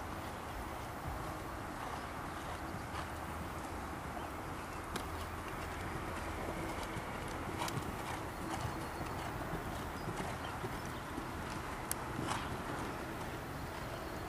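Hoofbeats of a horse cantering on a sand arena, with scattered short thuds over a steady outdoor background hiss.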